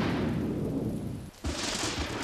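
Two thunder cracks, the film's storm effect: a loud crash that dies away over about a second, then a second sudden crack about one and a half seconds in.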